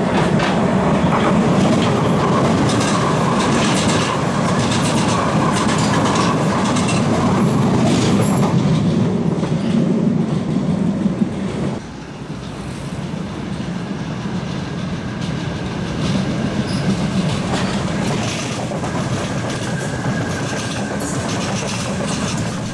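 Vienna U4 U-Bahn train wheels running over a double track crossover: a loud, steady running noise broken by repeated clicks as the wheels pass the switch frogs and rail joints. About twelve seconds in, it drops suddenly to a quieter, steady running noise as a U4 train approaches along the track and passes close by.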